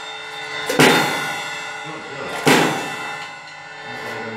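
Two cymbal crashes on a drum kit, about a second and three-quarters apart; the first comes under a second in, and each rings out and slowly dies away.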